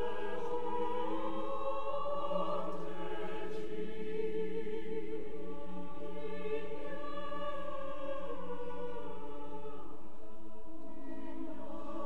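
Choir singing slow, sustained chords, the voices holding long notes that move to a new chord every couple of seconds.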